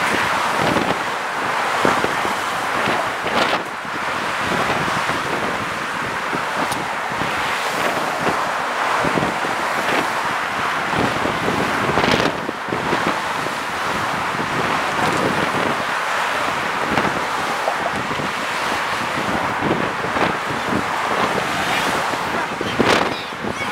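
Steady road traffic noise from cars passing in the lanes alongside, mixed with wind on the microphone, with a few brief louder swells.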